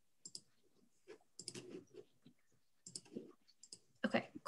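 Faint clicks of a computer mouse, a few at a time, spaced over a few seconds over quiet room tone, as a screen share and slideshow are being set up.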